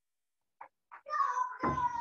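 A cat meowing: one long, slightly falling meow about a second in, preceded by two short faint sounds.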